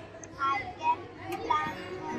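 A young girl's voice speaking a short English sentence aloud, such as 'I can plant a tree'.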